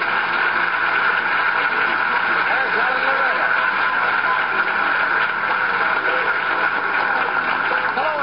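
Studio audience applauding steadily, with a faint voice through it about three seconds in.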